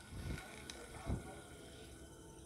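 Faint handling noise from a small size-1000 Ryobi spinning reel being turned over in the hands: two soft thumps and a light click.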